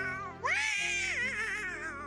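The cartoon Aracuan bird's voice: a call tails off, then about half a second in comes one long, wobbling high call that rises and slowly falls away, over background music.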